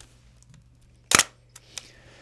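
Bronica ETRSi medium-format SLR firing: one sharp shutter clunk about a second in, followed by a faint click.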